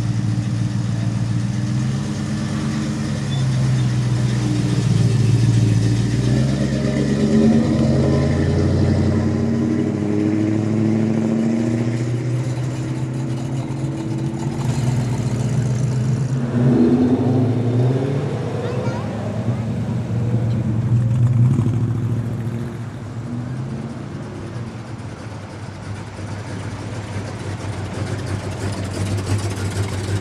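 Classic Mopar cars and an old Dodge pickup driving slowly past one after another, their engines running and swelling in loudness as each passes, then fading. There is a brief rev about two-thirds of the way through.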